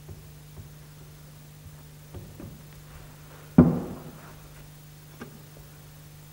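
Handling of wooden chair parts during gluing of the dowel joints: a few light clicks and taps, and one sharp wooden knock a little over halfway through, over a steady low hum.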